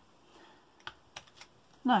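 A few light, sharp clicks and taps from thin metal craft cutting dies being handled on their plastic storage sheet, spread over about a second.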